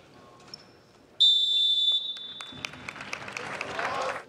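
A referee's whistle blows one long, loud blast a little over a second in, the signal for the lined-up teams to bow. Applause from the crowd follows, swelling toward the end before cutting off suddenly.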